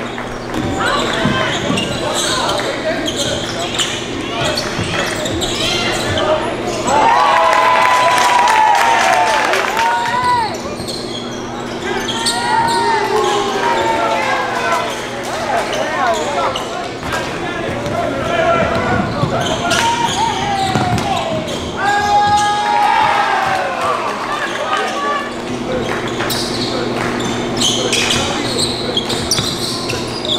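Basketball game sound on a hardwood gym court: a ball dribbling, sneakers squeaking in short bursts of play, and players and bench voices calling out, with the echo of a large hall.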